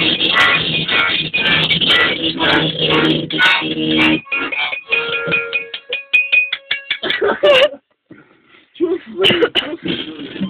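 Loud, chaotic grindcore-style noise music from an accordion and a one-string guitar. About four seconds in it breaks down into a few scattered held notes and plucks, then stops briefly near the end before a voice comes in.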